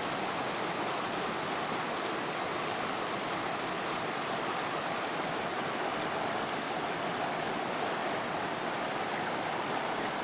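Shallow, rocky river running over and between boulders: a steady, even rush of water.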